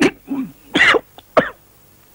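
A man coughing and sputtering on a mouthful of food, in three or four sharp bursts over about a second and a half.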